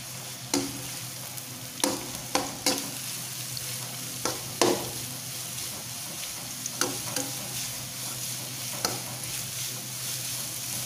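Sliced onions sizzling in hot oil in a non-stick kadai while a slotted metal spatula stirs them, scraping and knocking against the pan about nine times, most of them in the first five seconds.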